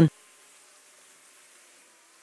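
Very faint outdoor ambience with a faint, steady buzzing hum.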